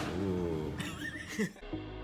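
A woman's excited voice without words, rising into a high squeal near the middle, cut off suddenly about one and a half seconds in by steady electronic background music.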